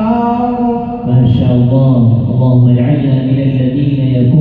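Quran recitation in the measured tarteel style: a single male voice chanting Arabic verses and holding long drawn-out notes. About a second in, it drops to a lower pitch and grows louder.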